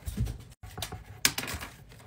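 A few light, scattered taps and clicks on a desk, such as a pencil and paper being handled, with a soft low thump at the start. The sound breaks off abruptly just after half a second.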